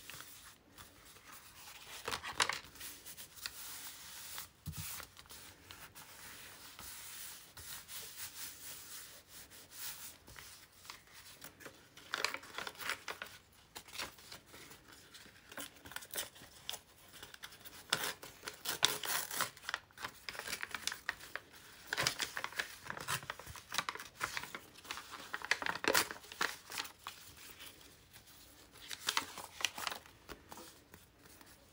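Paper being handled and torn by hand: irregular bursts of rustling and tearing of thin paper and embossed paper, with softer rubbing and sliding of sheets between them.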